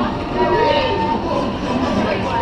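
Log-flume boat moving along its water channel: a steady rushing noise, with voices and held tones over it.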